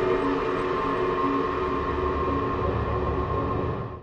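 Ambient music of sustained tones over a low rumble. The rumble gets heavier about one and a half seconds in, and the music fades out at the very end.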